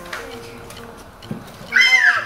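A child's short, very high-pitched squeal near the end, the loudest sound, over faint background music, with a soft knock a little past halfway.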